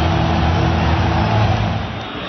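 Stadium crowd cheering loudly after the home side's goal, a dense steady noise over a deep rumble that eases near the end.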